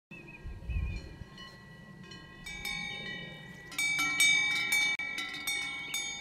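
Several cowbells clanging irregularly, their ringing overlapping at the same few pitches, growing louder and busier partway through.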